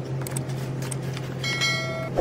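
Light clicks and handling of a cardboard perfume box over a steady low hum. About one and a half seconds in comes a bright bell-like notification chime, the sound effect of an on-screen subscribe-button animation.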